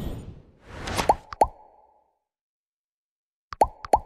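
Subscribe-button animation sound effects: a short whoosh, then two clicks each paired with a quick rising pop about a second in. After a silent pause, two more click-pops come near the end.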